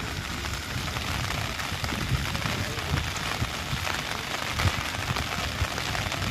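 Steady rain falling, an even hiss without a break.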